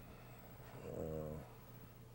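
A man's drawn-out hesitation 'uh', held on one low pitch for under a second in the middle, with faint room tone around it.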